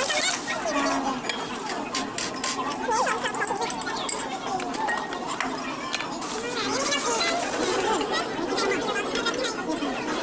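Indistinct chatter of many diners' voices filling a restaurant dining room, with a few brief light clicks, like spoons against dishes.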